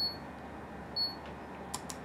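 A digital camera beeping twice: two short, high electronic beeps about a second apart, followed by a couple of faint clicks near the end.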